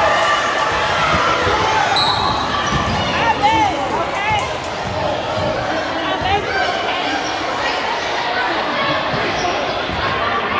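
A basketball bouncing on a hardwood gym floor amid crowd chatter and voices echoing in a large hall, with a short high whistle blast about two seconds in.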